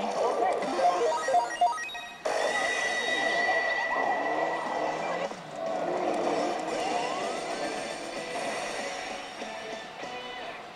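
Initial D pachislot machine playing its race-battle music and electronic sound effects while its bonus run continues, with a few sharp clicks about a second in and a rising electronic sweep near the seventh second.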